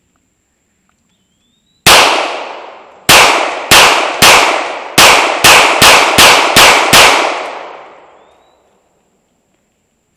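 9 mm Sig Sauer semi-automatic pistol firing ten shots. There is a single shot, then about a second later a quick string of nine, the pace picking up. Each shot trails off in a long echo.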